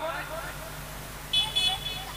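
A lull in an amplified sermon: a steady low hum from the public-address system under faint voices, with a short high-pitched tone a little past the middle.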